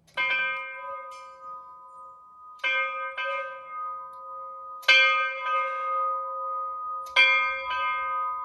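A wall-mounted bell rung by pulling its cord. It gives four main strikes about two and a half seconds apart, most followed half a second later by a lighter strike, and the ringing carries on between them.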